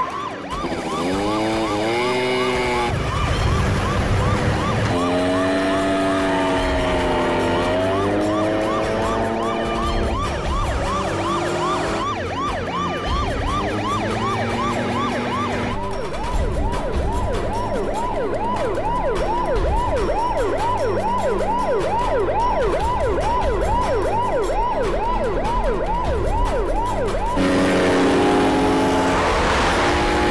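Police siren yelping in rapid repeated rising sweeps, quickening from about halfway through, over a film soundtrack with a low pulsing beat.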